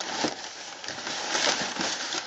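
Crumpled packing paper rustling and crinkling as a hand digs through it inside a cardboard box, loudest around the middle.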